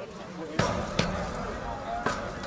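Two sharp knocks close to the microphone, about half a second apart, with a low rumble starting at the first knock, over faint voices.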